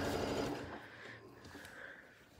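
Sewing machine running as it top-stitches along the fabric edge, slowing and stopping about half a second in; faint quiet follows.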